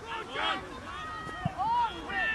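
Indistinct shouts and calls from several voices of players and touchline spectators across a grass football pitch, with one short dull thump about three-quarters of a second before the end.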